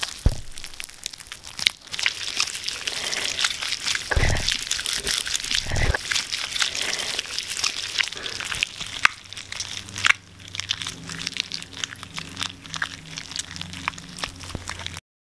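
Homemade slime squeezed, scrunched and stretched in hands: a dense run of small wet pops and crackles, with a couple of duller squelches about four and six seconds in.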